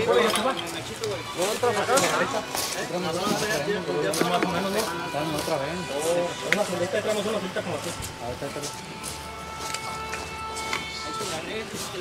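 Indistinct voices over background music, with steady held tones in the music in the later part.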